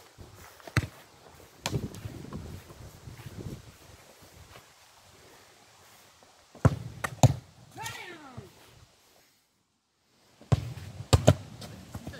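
Sharp thuds of a football being kicked, loudest as a pair about midway, followed by a brief falling cry. Near the end there is a short stretch of dead silence.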